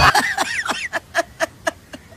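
A man laughing in a rapid run of short bursts, about four a second, trailing off.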